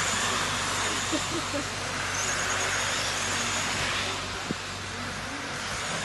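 Radio-controlled touring cars running at speed on an asphalt track, a steady high hiss of motors and tyres that drops off about four seconds in as the cars move away.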